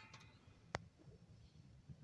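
Near silence with one short, sharp click about three-quarters of a second in.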